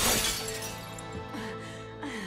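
A glass mirror crashing down and shattering, the burst of breaking glass loudest at first and fading away over about a second, with film score music underneath.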